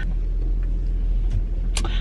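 Steady low rumble of a car heard from inside its cabin, with one brief click near the end.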